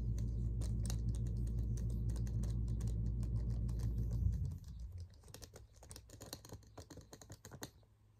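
Natural fingernails tapping on a leather handbag strap, a quick run of light clicks. A loud, steady low hum under the first half cuts off suddenly about four seconds in, after which the taps are sparser and quieter.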